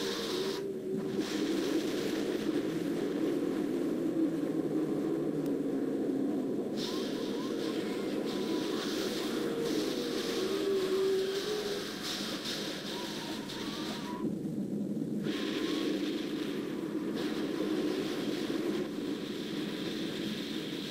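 A steady rumbling roar of noise with faint wavering tones in it. It thins briefly in its upper range near the start and again about two-thirds of the way through.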